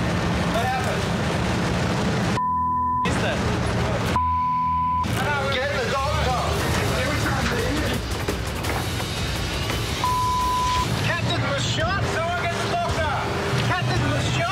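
Three broadcast censor bleeps, each a steady 1 kHz tone under a second long, about two and a half, four and ten seconds in, cutting over agitated voices. A steady low rumble runs underneath.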